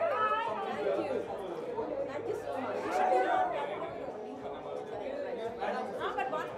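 Indistinct chatter of several people talking over one another.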